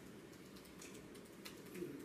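Faint room tone with scattered light clicks, irregularly spaced, something like soft keystrokes.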